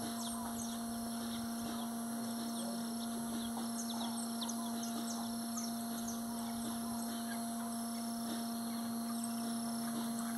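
Small birds chirping, many short quick calls, over a steady low hum.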